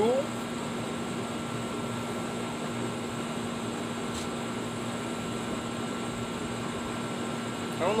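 Steady mechanical hum with a low, even drone, with a faint tap about four seconds in.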